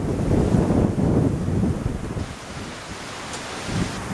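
Strong gusty wind buffeting the microphone. It is loud for the first two seconds and eases somewhat after that.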